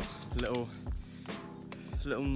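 Background music with a steady beat and held chords, with a voice over it around half a second in.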